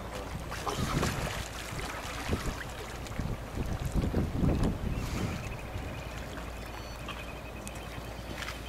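Wind buffeting the microphone, with sea water washing against a rocky shore; the gusts are loudest around four to five seconds in.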